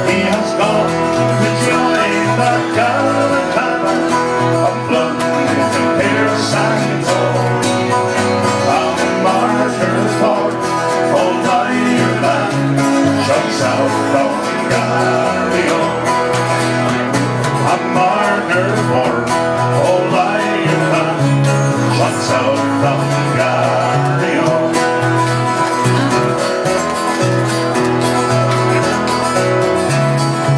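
Live band of several acoustic guitars strumming an Irish folk song in a steady rhythm, loud and reverberant in a crowded pub room.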